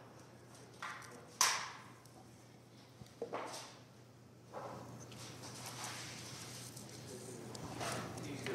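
Faint handling sounds of an adhesive Velcro strip having its backing peeled and being pressed into place: a few brief scratchy peels and rustles, the clearest about one and a half seconds in.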